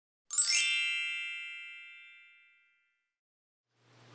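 A single bright chime sound effect, struck about a third of a second in and ringing out over about two seconds.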